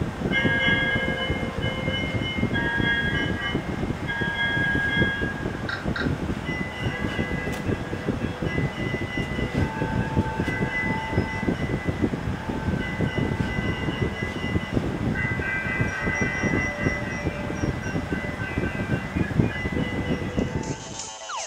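A continuous low rumble with several high, steady tones that come and go every second or two.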